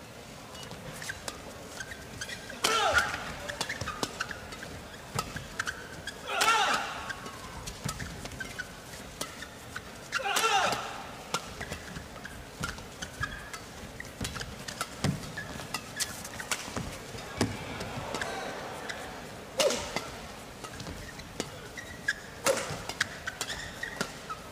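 Badminton rallies: rackets striking a shuttlecock in sharp, irregular clicks, with half a dozen short squeaks of shoes twisting on the hall floor.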